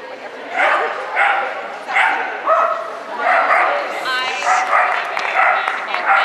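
A dog barking repeatedly, about two sharp barks a second, starting about half a second in.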